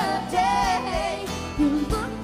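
Live country-pop band playing: a woman's lead vocal over a strummed mandolin and a drum kit, with a few drum strikes.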